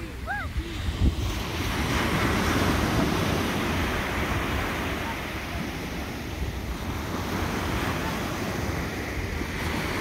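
Ocean surf breaking and washing up the beach, a steady rushing wash of water, with wind buffeting the microphone and a brief thump about a second in.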